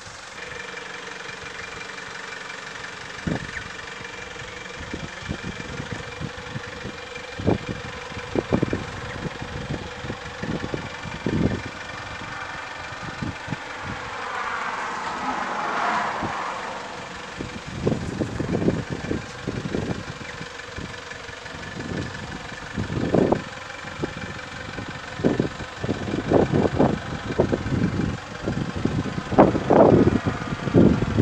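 Wind buffeting the microphone in irregular gusts, which come thicker and louder in the second half, over a steady engine-like hum. About halfway through there is a louder swell whose pitch sweeps down and back up.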